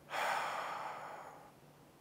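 A man's long sigh: a breathy exhale that starts loud and fades away over about a second and a half.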